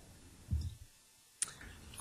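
Quiet room tone on an open meeting microphone, with a soft low thump about half a second in and a single sharp click near the end.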